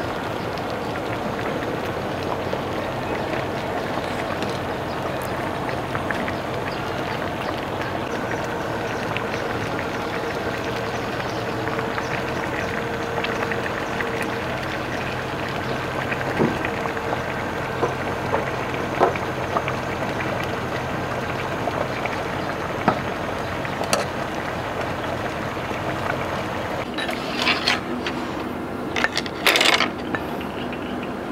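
A steady hiss of a simmering pot of soup on a gas burner, with now and then a sharp clink of a metal ladle against the steel pot and a ceramic bowl as soup is ladled out. Near the end the background changes and a few louder clinks of bowls follow.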